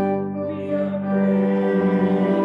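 A woman singing a hymn solo in long held notes over instrumental accompaniment, with a short break for breath about half a second in and a wavering note near the end.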